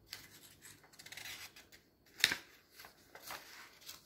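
A paper page of a notebook being handled and turned: soft rustling and rubbing, with one sharp crisp flick of paper a little over two seconds in.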